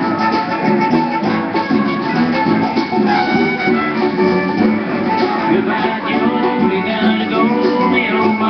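Live band music playing continuously from a festival stage, heard from the audience.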